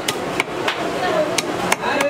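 A wooden club knocking on a live carp, about five sharp, uneven blows in two seconds, the fish being struck to stun it before cutting. Market chatter runs underneath.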